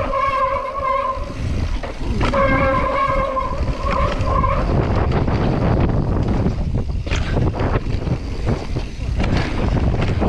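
Mountain bike on a dirt trail: the rear freehub buzzes with a steady high whine while the rider coasts, breaks off for about a second, then returns. It cuts out about four and a half seconds in, leaving tyre rumble, rattles over the rough trail and wind on the microphone.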